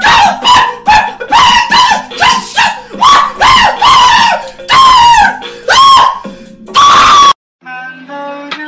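A high-pitched voice shrieking in short, arched bursts, about three a second, over a music track; the last cry is held longer and then cuts off abruptly. Plucked string notes follow near the end.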